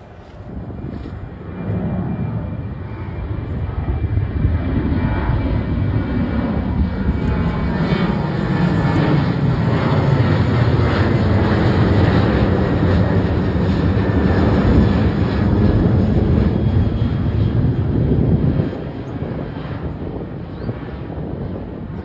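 Twin-engine jet airliner passing low overhead with a deep, steady engine roar. The roar builds over the first few seconds, stays loud through the middle, then drops away sharply near the end as the jet moves off.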